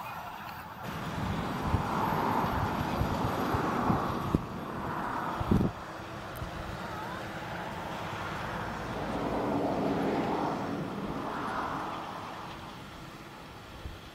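John Deere 7930 tractor's six-cylinder diesel engine working under load as it pulls a subsoiler through the field. The sound swells and eases, with a brief thump a little before the middle, and fades near the end as the tractor moves away.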